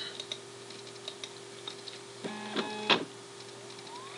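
Faint steady low hum with a few light clicks. About two and a half seconds in, a short mechanical whir from the computer ends in a sharp click, then a rising whine near the end as the DVD drive spins up to read the disc.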